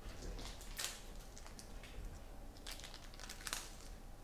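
Faint crinkling of packaging and light clicks of trading cards being handled, in a few short scattered bursts.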